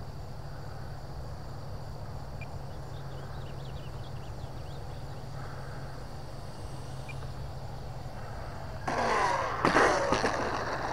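A faint steady low hum as the FMS P-39 Airacobra RC plane comes in, then, about nine seconds in, a louder burst of noise with a wavering pitch as it reaches the asphalt, ending in a sharp knock: a rough touchdown.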